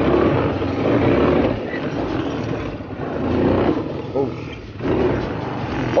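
ATV (quad bike) engine running as the machine bounces and clatters over a rocky dirt track, with a rough, steady rattling noise throughout.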